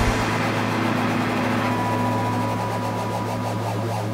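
Electric guitar and effects pedals through an amplifier holding a steady low hum-like drone after the band stops, with a thin high tone coming in about halfway through.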